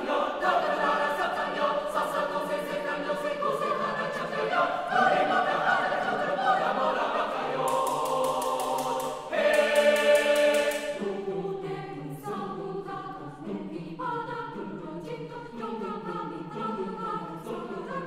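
Mixed chamber choir singing a cappella, many voices in close harmony. The singing swells to its loudest about nine seconds in, then drops back to a lighter texture.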